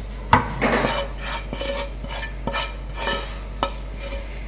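A spatula scraping cooked onions out of a frying pan into a glass bowl, with a sharp knock about a third of a second in, followed by a brief scrape and several lighter taps and scrapes.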